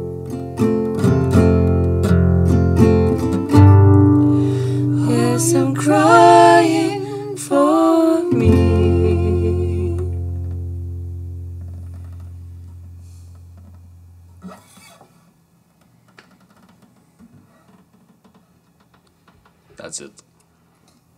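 Acoustic guitars strumming the closing chords of a song. The last chord, struck about eight seconds in, rings out and fades away over several seconds, leaving only a quiet room with a few small handling sounds.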